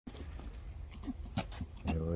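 A dog sniffing at and eating a piece of meat off paving stones, with a few short mouth clicks and smacks.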